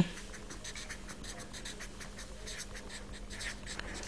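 Faint scratching of handwriting: a series of short, irregular writing strokes.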